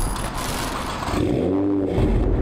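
Nissan GT-R R35 engine starting up: a sudden burst of noise, then a short engine note that rises and falls back near the end.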